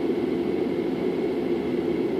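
Steady hum and hiss of a car's interior, with the vehicle's running noise or ventilation fan droning evenly and nothing else happening.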